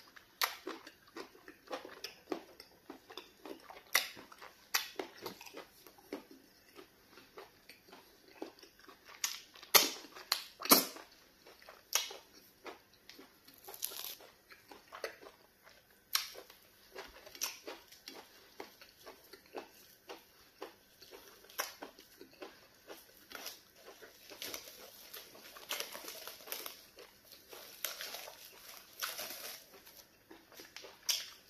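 Close-miked eating sounds: wet lip smacking, finger licking and chewing of soft pounded yam with egusi soup, as irregular sharp clicks and smacks, a few louder ones around ten to eleven seconds in.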